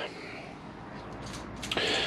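Quiet workshop room noise with a few faint clicks and scrapes of a hex key at work on the clutch master cylinder's handlebar clamp bolts.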